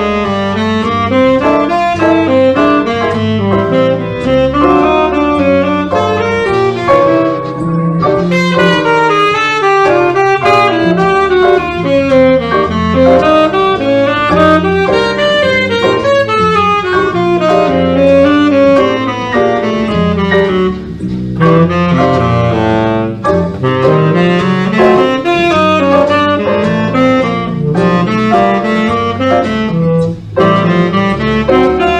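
Tenor saxophone improvising fast, running jazz lines built on the bebop scale over a blues, with a steadily stepping walking bass line underneath.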